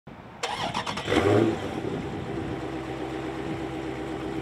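Car engine sound effect in a channel intro ident: the engine starts suddenly about half a second in, revs once, then settles into a steady hum.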